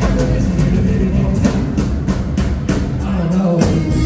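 Live rockabilly band playing: upright double bass, electric guitar and drum kit, with a steady beat of about four drum hits a second.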